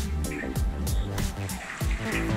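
Background electronic music with a steady beat and a deep bass line.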